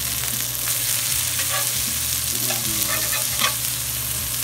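Freshly ground beef patties sizzling steadily on a hot cast-iron griddle, with a few short scrapes of a metal spatula on the griddle as a patty is lifted and flipped.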